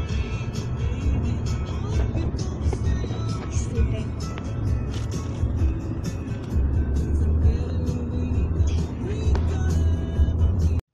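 Steady low road rumble inside a moving car's cabin, with music playing over it.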